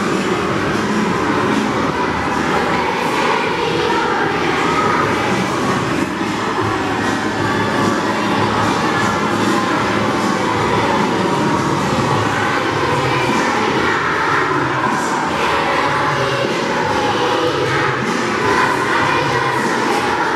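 A large group of children singing a Christmas carol together, heard as a loud, unbroken, blurred wash of voices in a reverberant hall.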